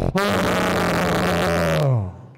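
A man's loud, raspy, drawn-out vocal noise made into the microphone, a comic sound effect rather than words, holding one pitch for over a second and dropping in pitch as it ends.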